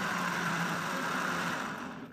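Electric countertop blender running at speed, blending banana and apple for a milkshake; near the end it is switched off and winds down.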